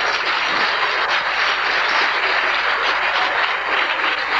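Live audience applauding steadily in response to a joke.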